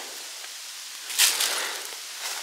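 A footstep rustling through fallen autumn leaves about a second in, after a moment of faint hiss.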